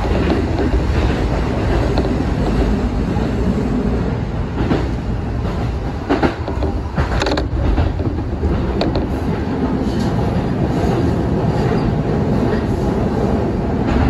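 Ome Line electric train running along the track, heard from inside the driver's cab: a steady rumble of wheels on rail, with irregular clicks as the wheels pass over rail joints.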